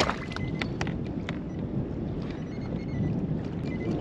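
Wind buffeting the microphone and water moving against a fishing kayak's hull, with several short splashes and clicks in the first second or so as a hooked halibut thrashes at the surface beside the boat.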